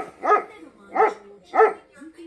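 A small Pomeranian barking four short, high-pitched barks in excitement at being offered a treat.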